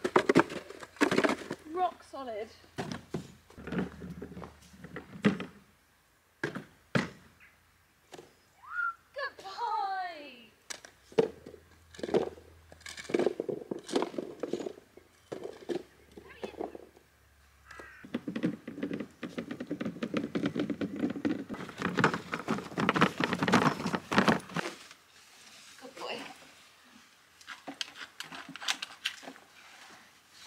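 Manure rake and scoop knocking and scraping on frosty ground while a paddock is poo-picked: many short, irregular thunks and scrapes.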